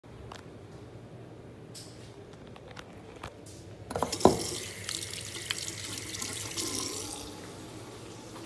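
Faucet water running into a sink basin, starting about halfway through with a sharp click and tapering off near the end. Before it there is only a faint steady hum with a few small ticks.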